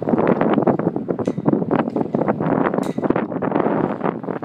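Wind buffeting a handheld phone's microphone as it moves outdoors: a loud, rough, uneven rumble with many rapid crackles.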